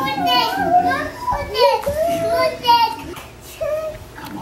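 Toddlers' high-pitched voices babbling and calling out while they play.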